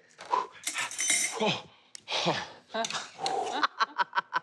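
Short vocal exclamations and laughter, with light clinking of cutlery and glassware; near the end comes a quick run of short, evenly spaced pulses.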